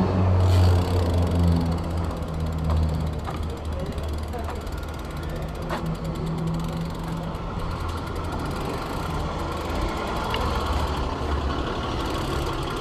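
A vehicle engine idling nearby with a steady low hum, strongest at the start, over the fine ticking of a BMX bike's freewheel as it coasts across pavement, with a few light clicks.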